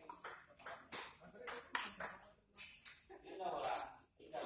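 Table tennis rally: a celluloid ping-pong ball clicking sharply against the paddles and the table top, about ten hits at an uneven, quick pace.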